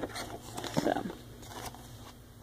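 A few quiet spoken words over faint room noise with a steady low hum; the embroidery machine is not yet stitching.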